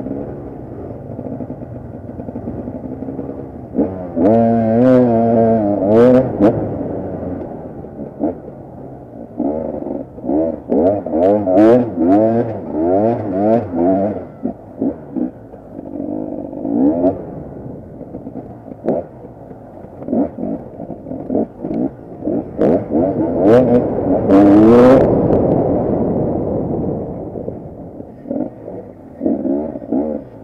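KTM 250 EXC two-stroke enduro motorcycle engine at a steady idle, then opened up about four seconds in. Through the rest it revs in repeated bursts, its pitch rising and falling with the throttle, loudest about three-quarters of the way in. Sharp knocks are scattered among the revs.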